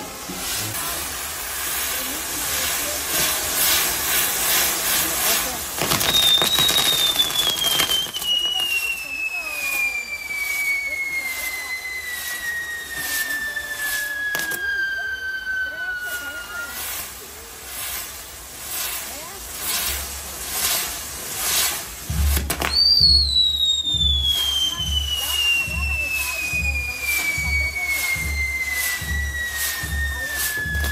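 Castillo fireworks burning: spinning pyrotechnic wheels crackling and hissing with rapid small pops. Two long firework whistles slide steadily down in pitch, the first starting about six seconds in and fading out about ten seconds later, the second starting suddenly about twenty-two seconds in.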